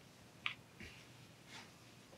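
Faint handling of a knitted wool headband: soft rustles of the fabric as it is turned and smoothed, with one small sharp click about half a second in.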